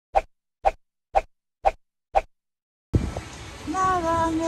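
Five short pops, evenly spaced about half a second apart, over dead digital silence: an editing sound effect laid over a title card. About three seconds in, street noise and a voice cut in.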